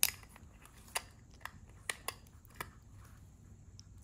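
About five light, sharp clicks of a USB plug and a translucent plastic USB hub being handled as the plug is fitted into a port, spread over the first three seconds.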